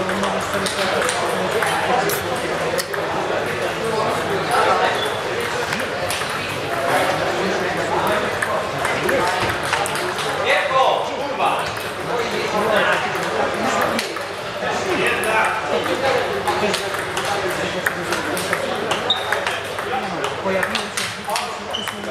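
Table tennis balls clicking on tables and bats in rallies at several tables, the ticks coming irregularly and overlapping, over a hubbub of voices in a large hall.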